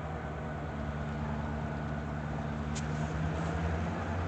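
Diesel locomotive engine working hard under load, a steady low drone that grows slightly louder: the locomotive is struggling to move its train.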